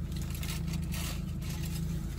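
Steady low hum of a running car, heard from inside the cabin, with faint rustling of a foil-and-paper sandwich wrapper and chewing over it.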